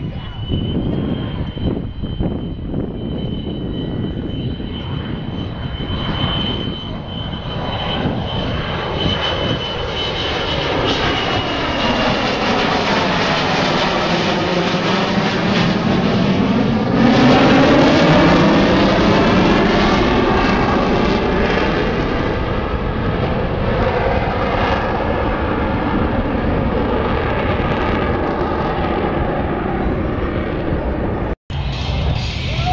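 F-4 Phantom II jet fighter making a pass: the jet noise builds with a thin high whine, peaks loudest about seventeen seconds in with a sweeping, wavering tone as it goes by, then trails off slowly.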